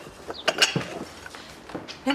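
Ceramic dishes and paper being handled: a few sharp knocks and clinks of pottery about half a second in and again near the end, with paper rustling.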